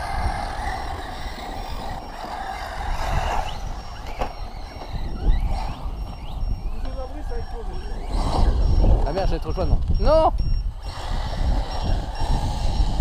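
Electric RC buggies' brushless motors whining, the pitch sweeping up and down as they accelerate and brake, with the sharpest rising whines about eight to ten seconds in. A steady low rumble runs underneath.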